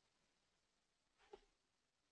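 Near silence: room tone, with one faint, brief sound a little past a second in.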